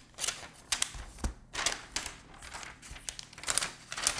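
Thin plastic protective wrap being peeled off an Apple Magic Keyboard and handled: soft rustling and crinkling, with a few sharp clicks and taps as the keyboard is turned and touched.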